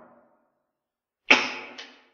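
A man coughing twice in quick succession about a second in, each cough trailing off in an echo.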